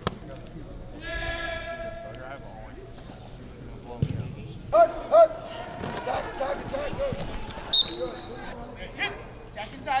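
Football contact drill: players and coaches shouting, with a drawn-out yell about a second in and louder shouts about five seconds in. Dull thuds of bodies hitting pads and a blocking dummy come through, and a short high whistle sounds near the end.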